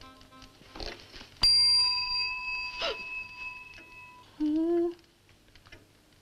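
A hotel reception desk bell struck once, a bright ring with a few clear tones that fades over about three seconds. A few light knocks and a short vocal sound follow.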